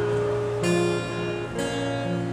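Acoustic guitar strumming chords, two strums about a second apart, the chords ringing on between them.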